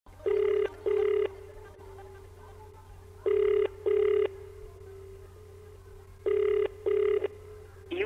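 Telephone ringback tone, the sound a caller hears while the line rings: a low double ring, repeated three times about three seconds apart, over a faint steady hum.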